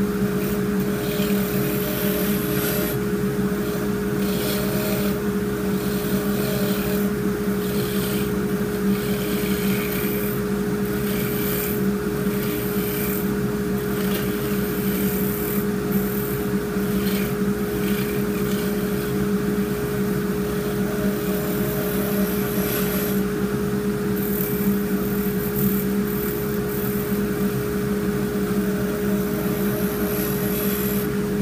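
Turncrafter wood lathe running at high speed with a steady motor hum, while a turning tool cuts the spinning European yew blank to round it and shape it. The hiss of the cutting comes and goes every second or two as the tool goes on and off the wood.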